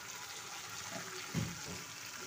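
A pot of rice and lentils (khichuri) simmering at the boil after the grains have cooked soft, giving a faint, steady bubbling.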